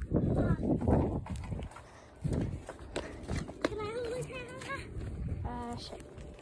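Footsteps and rustling handling noise as a phone is carried over mulch and grass, loudest in the first second and a half, followed by a few short wordless wavering vocal sounds from a child.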